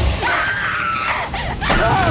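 A woman screaming in terror: one long high-pitched wavering scream, then a second cry starting near the end, over a low rumble.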